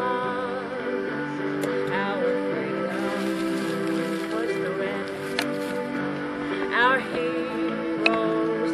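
A woman singing a slow song over a recorded backing track of held, sustained notes played from a small portable cassette player.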